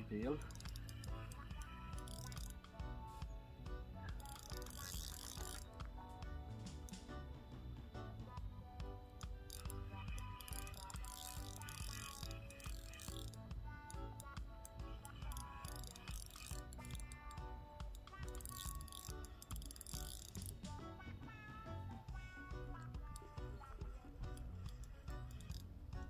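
Spinning reel on a feeder rod being cranked to wind in line, a ratcheting whir in several spells of a few seconds each, over background music.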